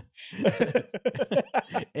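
Men laughing heartily in quick, breathy bursts, starting about half a second in.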